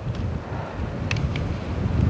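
Blizzard wind buffeting the camcorder microphone as a steady low rumble, with a couple of faint clicks about a second in.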